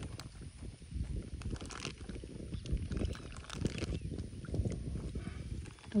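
Water sloshing and splashing softly as a hand works an opened plastic bag in the water to let tilapia fingerlings out, over an uneven low rumble.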